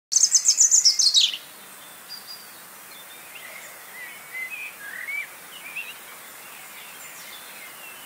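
Birdsong from a nature-sounds background track: a rapid run of loud, high chirps falling in pitch over the first second or so, then fainter scattered chirps and short whistles over a steady hiss.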